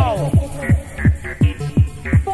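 Fast electronic dance music: a heavy kick drum about three beats a second, each kick dropping in pitch, with a short bass note between the kicks.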